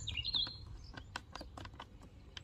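A series of light, irregular plastic clicks as the orange bottle-cap connector is screwed into the Worx Hydroshot's water inlet, with a bird chirping at the start.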